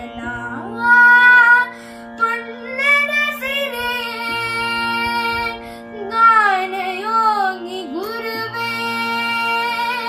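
A boy singing a Kannada song solo, with sliding, ornamented notes and short breaths between phrases, over a steady unchanging drone.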